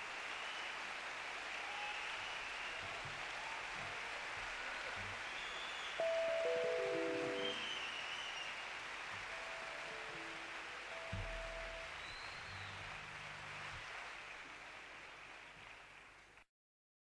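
Quiet live jazz trio music fading out over a steady hiss: a stepwise falling run of single notes about six seconds in, then a few scattered notes and a low bass note near eleven seconds that rings on.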